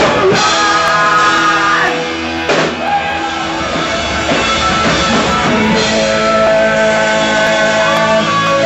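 Punk rock band playing live: electric guitars, bass guitar and drum kit with sung vocals, loud and continuous.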